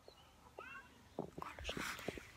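Faint handling noise: a few light clicks and a short rustle in the second half, with a brief faint high-pitched call about half a second in.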